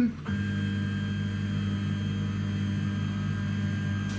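Z-axis drive motor of a CNC-converted Sieg X2 mill jogging the head upward at constant speed: a steady, even hum of several held tones that starts about a quarter second in.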